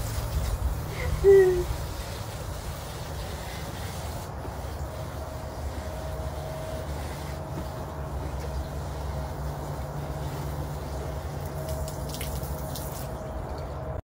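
Water trickling from a small plastic watering can onto plants and soil, over a steady low hum. A brief child's vocal sound comes about a second in.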